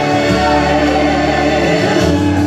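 Two women singing a gospel worship song together through handheld microphones over backing music, with long held bass notes that change about every second or two.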